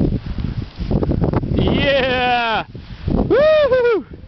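Wind buffeting the microphone, with two long, high-pitched whoops of a person cheering: the first wavers and falls in pitch about one and a half seconds in, the second rises and falls near the end.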